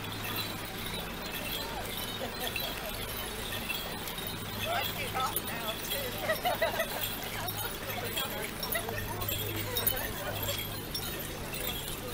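Faint, distant voices over a steady low hum, with a few light clinks.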